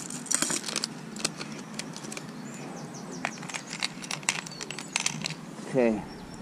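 Metal lures, spinners and spinnerbaits clinking and clicking irregularly as they are handled and dropped into a plastic tackle box. Just before the end comes a short falling pitched sound, the loudest moment.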